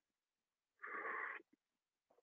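A single audible breath taken by a man, about half a second long, near the middle of an otherwise near-silent pause in his speech.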